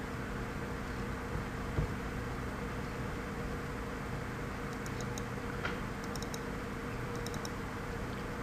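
Steady low hum and hiss of room or computer noise, with a few faint small clicks of a computer mouse in the second half as folders are double-clicked open.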